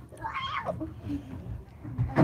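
A short, high-pitched cry that rises and falls about half a second in, followed by laughter.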